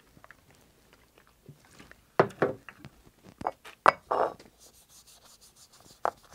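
A paper towel wet with denatured alcohol rubbing a new steel leatherworking tool to strip its factory protective coating, with a few light clicks and knocks as the metal tool is handled on the cutting board.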